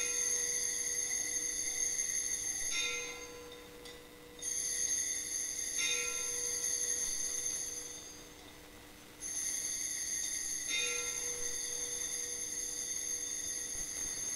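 Altar bells rung three times at the elevation of the consecrated host, each a ringing of about four seconds with a fresh strike partway through, the rings about five seconds apart.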